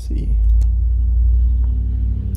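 A loud, steady low rumble that starts suddenly, with a few sharp clicks in the first half second.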